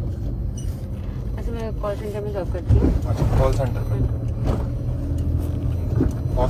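Steady low engine and road rumble heard from inside a moving car's cabin, with quiet talking over it and a short low bump a little under three seconds in.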